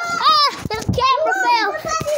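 Children's high-pitched voices yelling and laughing excitedly, without clear words.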